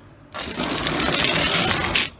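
Red cordless impact driver running in one rapid hammering burst of about a second and a half, starting shortly in and cutting off suddenly.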